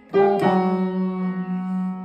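Yamaha piano: a chord struck just after a short pause, with a second attack a moment later, then held and left to ring.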